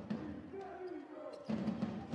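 Indoor volleyball arena ambience: a low murmur of voices with a few light knocks, and a clearer voice coming in about a second and a half in.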